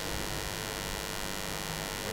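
Steady electrical hum with a hiss of background noise: room tone, no events.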